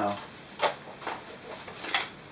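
A Nerf Dart Tag Snap Fire blaster being drawn from a chest rig: a few short plastic knocks and clicks, the loudest about two-thirds of a second in.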